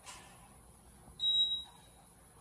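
Otis elevator car's floor signal: one short, high-pitched electronic beep about a second in as the car comes to the next floor down, after a soft click at the start.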